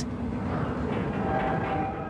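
A steady low rumble, with a faint held tone joining in after about a second and the whole easing off at the very end.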